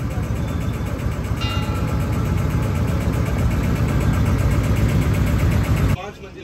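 Motorboat engine running steadily with a fast even beat, growing slightly louder, and cut off abruptly at the end.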